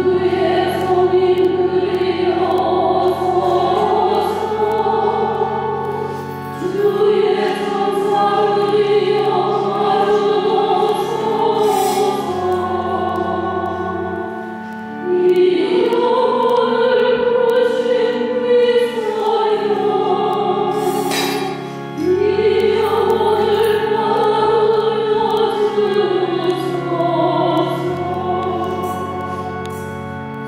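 A choir singing a slow hymn over organ accompaniment that holds long low notes, in phrases that restart about every six to seven seconds.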